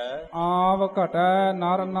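A man recites Sikh scripture (Gurbani) in a slow chant, holding each syllable on a steady pitch.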